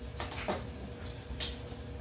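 Hard plastic clicks and knocks from PVC pipe and fittings being handled and fitted together: a few short sharp ticks, the sharpest about one and a half seconds in.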